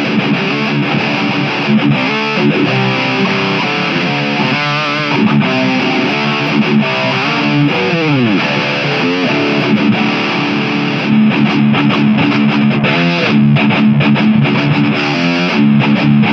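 Les Paul-style electric guitar played fast, with picked riffs and lead lines throughout; about eight seconds in, one note slides steeply down in pitch.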